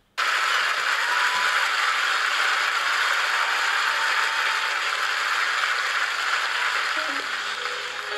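Large concert audience applauding, a steady wash of clapping at the start of a live performance. Near the end the clapping eases as the first sustained instrumental notes of the song come in.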